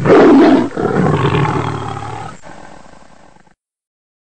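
Roar sound effect, like a big cat's, in two loud surges with a short break in between, then fading and cutting off well before the end.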